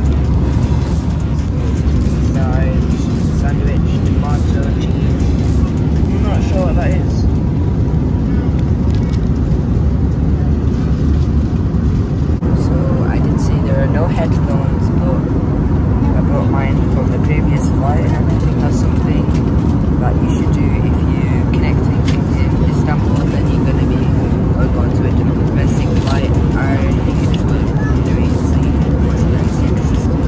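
Steady cabin noise of an Airbus A321 airliner in flight: an even, low engine and airflow rumble, with faint voices in the background.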